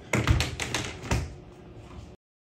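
Plastic mop charging bucket being flipped upside down on a countertop: a quick run of hard plastic knocks and clicks from the bucket, lid and handle, the loudest right at the start and another about a second in, as the cleaning solution is turned onto the mops.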